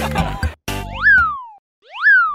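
Background music cuts off about half a second in, followed by two cartoon 'boing' sound effects, each a whistle-like tone that shoots up in pitch and then slides back down, with a short pause between them.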